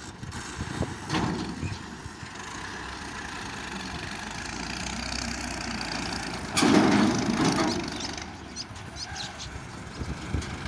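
Massey Ferguson 240 tractor's diesel engine running while it moves an empty trolley over sand. A louder, noisy surge lasting about a second comes around six and a half seconds in.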